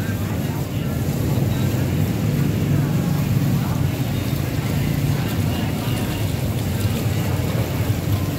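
Water running from a hose and splashing into a basin as live swamp eels are rinsed and rubbed by hand, over a steady low motor hum.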